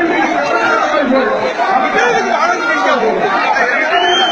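A crowd of many voices talking and calling over one another, steady and fairly loud.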